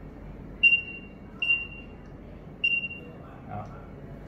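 Zebra DS9908R handheld scanner's beeper giving three short high beeps, each fading quickly, as it reads RFID tags in RFID mode. Each beep signals a good read.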